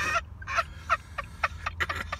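A person laughing in short, repeated bursts, a few a second, after a longer pitched note at the very start.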